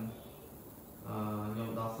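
A man's voice in a level, chant-like monotone. It drops out briefly and resumes about a second in.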